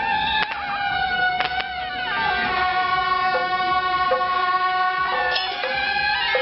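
Several suona shawms playing long held, reedy notes together, with a downward pitch slide about two seconds in. A few sharp percussion strikes fall alongside.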